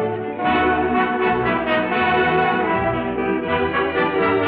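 Orchestral music with brass leading: the instrumental introduction of a French chanson, before the singer comes in.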